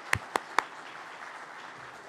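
Congregation applauding. Sharp, even hand claps close to the microphone, about four a second, stop about half a second in, leaving a softer, spread-out applause.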